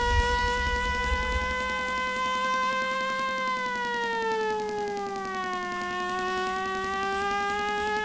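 A small handheld siren held up to a microphone, its steady wail sinking in pitch about halfway through and climbing back up, over electronic music whose low pulsing bass drops out early on.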